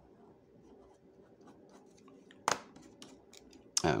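Pen drawing on paper: faint, short scratching strokes as lines are inked. A single sharp click about two and a half seconds in is the loudest sound.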